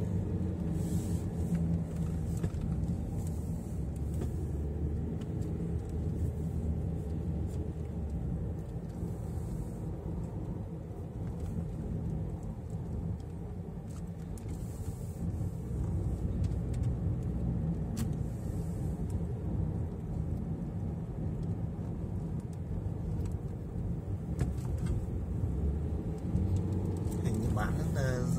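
Car engine and tyre noise heard from inside the cabin while driving: a steady low hum that eases slightly about halfway through and picks up again.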